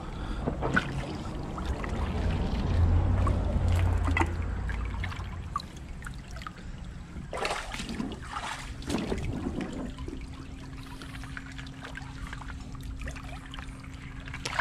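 Shallow creek water trickling and splashing over rocks, with a heavier low rushing for the first few seconds. A few knocks and splashes come past the middle as stones are shifted by hand in the water.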